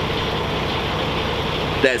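Steady drone of an idling engine, even and unchanging, with a faint steady hum in it.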